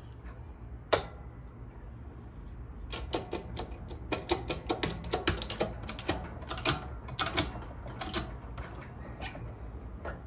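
Metal ring-sizing tooling on a bench press being handled: one sharp click about a second in, then a fast, irregular run of light metallic clicks and taps, like typing, for most of the rest.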